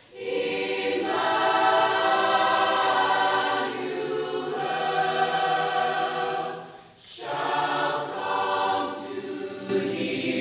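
Large mixed choir of men's and women's voices singing sustained chords, with a short break between phrases about seven seconds in.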